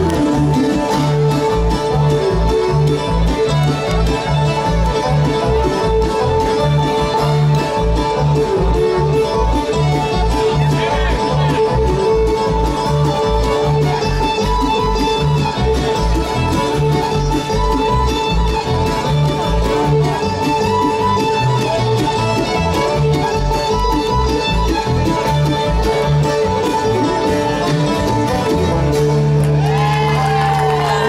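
Bluegrass band playing an instrumental break on mandolin, five-string banjo and acoustic guitar, with a steady low bass pulse on the beat. Near the end the tune settles into a held chord.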